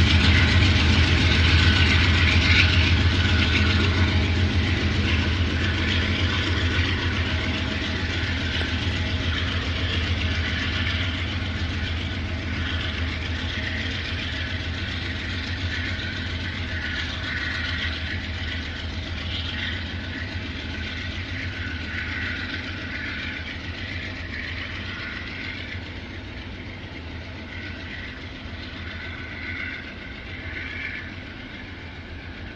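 Norfolk Southern diesel locomotive and its freight cars rolling away along the track: a steady low engine drone with wheel and rail noise over it, fading slowly as the train recedes.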